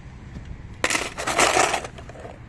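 A die-cast toy car dropped into a plastic bowl of other toy cars, a clattering rattle lasting about a second, starting just under a second in.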